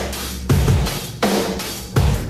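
Heavy rock music: a slow drum-kit beat of bass drum and cymbal crashes, one hit about every three-quarters of a second, each crash ringing on, over a steady low note. This is the start of the 'monster riff' that follows a count-in.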